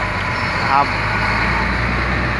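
Caterpillar 120K motor grader's diesel engine running steadily, a low drone that grows a little stronger about halfway through, with a broad hiss above it.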